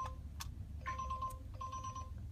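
Electronic chime beeping: a steady mid-pitched tone repeating about every 0.7 seconds, with a single click between beeps, over a low steady rumble.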